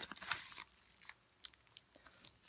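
Yellow padded mailer rustling and crinkling as a trading card in a clear plastic sleeve is slid out of it, loudest in the first half-second, then a few faint crackles.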